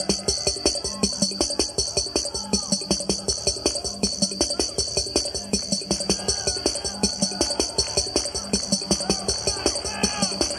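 Roland CR-78 drum machine playing a steady preset rhythm: fast, even hi-hat ticks over low kick and snare hits.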